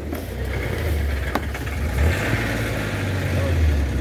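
A vehicle engine idling nearby, a steady low rumble, with a single sharp click about one and a half seconds in.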